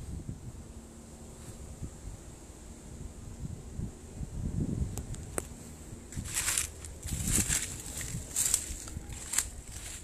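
Footsteps scuffing over the ground with irregular thuds, then bursts of crisp crunching and rustling in the second half as dry leaves and litter are trodden on. A sharp bump opens it, like the phone being jostled in the hand.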